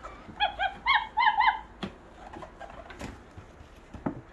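Lucy interactive plush puppy toy barking: a quick run of about five short, high yips from its small speaker in the first second and a half, followed by two sharp clicks.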